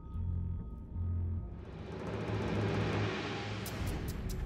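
Dark, suspenseful background music built on a low rumble, with faint held tones early on and a rising hiss toward the end.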